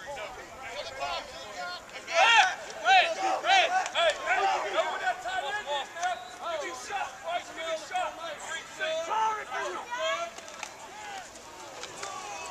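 Shouting from several voices on a football field. About two seconds in comes a string of short, loud calls about half a second apart, then overlapping yells carry on through the play.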